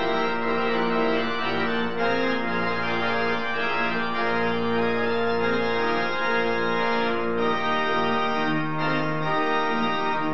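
Pipe organ played from a three-manual console: full sustained chords held over a bass line, the chords moving every second or so and the bass shifting a little after seven seconds in.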